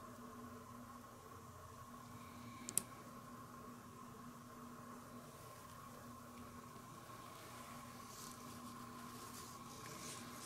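Quiet room tone with a faint steady hum. A single small click comes about three seconds in, and faint light rustling of the model being handled is heard near the end.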